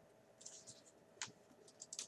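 Faint scratching of a pen writing on a planner page, about half a second in, followed by a single sharp tick a little past a second and a few light paper ticks near the end as the pages are handled.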